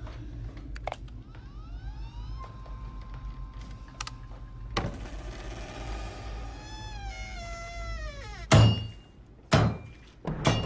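Suspense film soundtrack: a steady low rumble with a few small clicks and knocks, eerie gliding tones that rise, hold and then fall in several pitches, and then two loud thuds about a second apart near the end.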